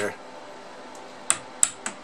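Plastic screwdriver handle tapping sharply three times on the glass of a 6V6 output tube in a Fender Deluxe Reverb, in the second half. The taps rock the tube in its socket, which the technician suspects has a poor pin 5 (grid) contact that drops the bias voltage.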